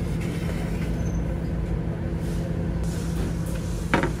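Steady low machine hum with a constant drone from the cafeteria's serving-line equipment. A short voice sound comes near the end.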